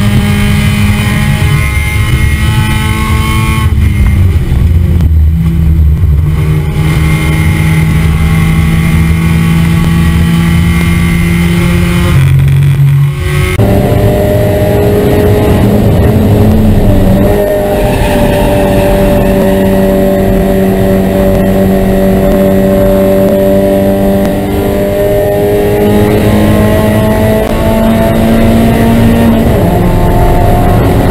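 Spec Miata race car's four-cylinder engine running hard at high, nearly steady revs, picked up by an onboard camera along with wind and road noise. The engine note drops and shifts a few times, at about 4 seconds, around 12 to 13 seconds, and near the end.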